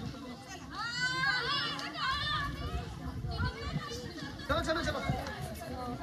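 High-pitched children's voices calling and chattering in the background, in two stretches, over low, steady outdoor noise.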